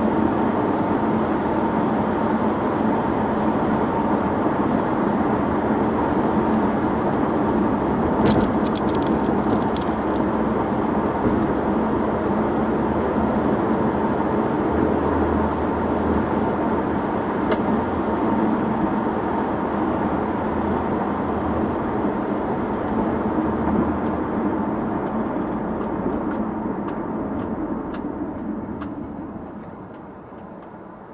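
Steady road, tyre and engine noise inside the cabin of a 2005 Audi A4 driving at road speed, fading over the last few seconds as the car slows to a stop. A short burst of rapid clicking comes about eight seconds in.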